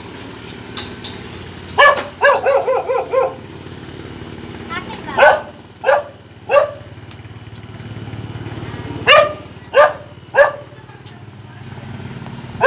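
A dog barking: one bark, then a quick run of about six, then two groups of three barks about half a second apart.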